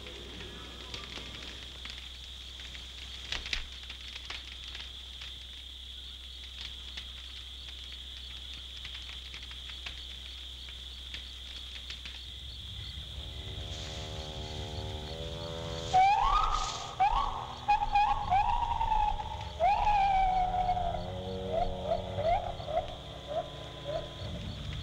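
Night jungle ambience on a film soundtrack: a steady high insect drone with a few faint crackles. About halfway through, low sustained music comes in, and about two-thirds through a run of loud, repeated falling swoops begins.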